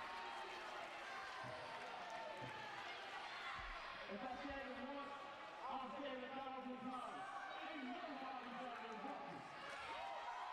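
Indistinct voices with crowd chatter, growing stronger from about four seconds in as a man speaks into a microphone; a few low thumps in the first few seconds.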